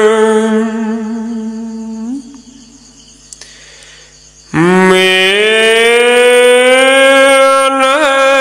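Khmer smot, Buddhist chanting by a single unaccompanied voice: a long held note with a wavering vibrato fades out about two seconds in. After a pause of about two seconds a new long note begins, slides up slightly and is held steady.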